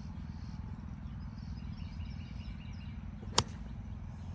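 A single crisp click of a gap wedge striking a golf ball, about three and a half seconds in. Faint bird chirps and a steady low outdoor rumble run underneath.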